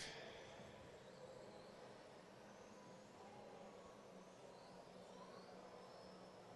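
Near silence: faint background hiss, with a faint high whine rising and falling now and then.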